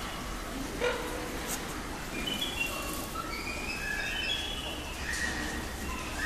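Small caged birds chirping in the background: a scattered series of short, high chirps at varying pitches over a faint steady room hum.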